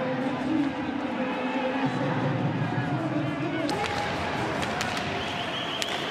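Ice hockey arena crowd: many voices of fans singing and chanting together at a steady level, with a few sharp clicks about two-thirds of the way through.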